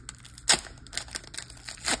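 Foil booster-pack wrapper being handled, with two sharp crinkling crackles about a second and a half apart and faint rustling between.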